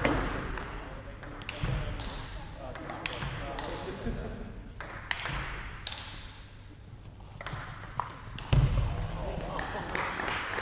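Table tennis ball clicking off bats and the table during a doubles rally: a string of sharp, irregularly spaced clicks, with a couple of low thumps from the players' feet.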